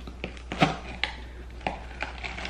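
A plastic bell pepper stem remover being forced by hand into a raw bell pepper: about five short, separate crunches and clicks as the pepper's flesh gives way under it.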